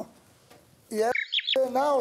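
A moment of quiet, then about a second in a person's voice: a short call and two quick, high rising squeals, running straight into speech.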